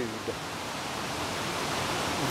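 Running water of a creek, a steady, even rush with no breaks.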